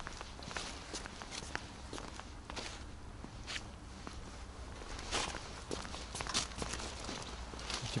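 Footsteps of a person walking on paved ground, an irregular series of short steps and scuffs.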